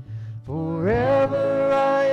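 A church worship band playing live with electric guitars, bass and singing. About half a second in, a voice slides up into one long held note.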